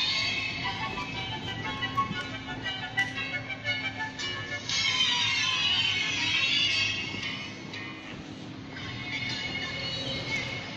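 An electronic melody playing from the speaker of a coin-operated dinosaur kiddie ride car, over a steady low hum.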